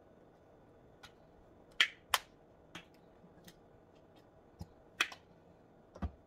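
Sharp clicks and taps of condiment bottles and spice jars being picked up and set down. The loudest pair falls about two seconds in, and another comes about five seconds in.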